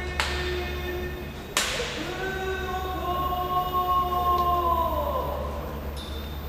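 Long, drawn-out chanted call in a sumo ring, its notes held steady and sliding down at the close. Two sharp slaps cut in: a faint one just after the start and a louder one about a second and a half in.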